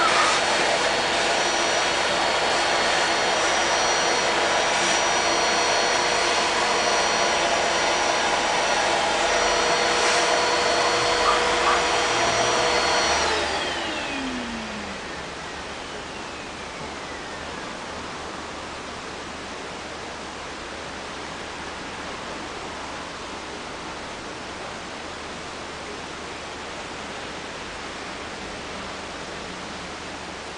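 A motor-driven appliance runs steadily with a whine over a rush of air. About 13 seconds in it is switched off and winds down, its whine falling in pitch, and a steady hiss remains.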